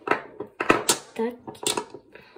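Large hematite magnets, oval ones and balls, clicking sharply as they snap together and knock against each other; several separate clicks.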